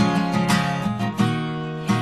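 Acoustic guitar strumming chords in a short instrumental break in a song, with one chord left to ring for most of a second near the end.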